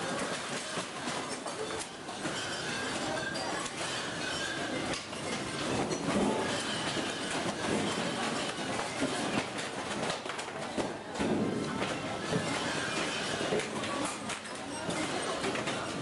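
Supermarket shelving and stock rattling and clattering without a break as the building shakes in an earthquake, with many small knocks of goods shifting and falling, over a low rumble.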